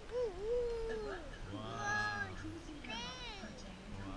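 A high-pitched wordless voice making several short whining calls that slide up and down in pitch: one near the start, another around two seconds in, and another around three seconds in.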